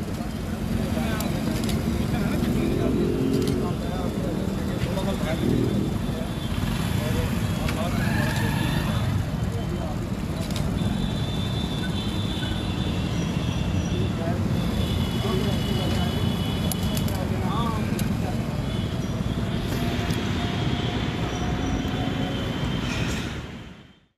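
Street and traffic noise: motorcycles and other vehicles running and passing at a checkpoint, a steady low rumble with indistinct voices in the background.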